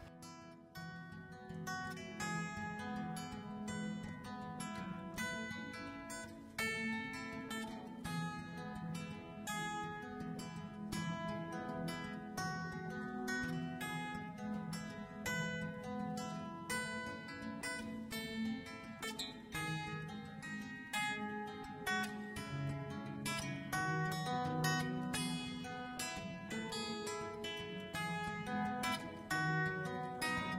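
Background music: plucked guitar picking a steady, continuous run of notes.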